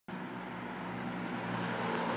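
Steady low hum of a running motor vehicle with roadside noise, slowly growing louder.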